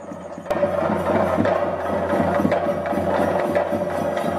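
Theyyam drumming on chenda drums: a fast, dense run of strikes that starts abruptly about half a second in and carries on at full strength.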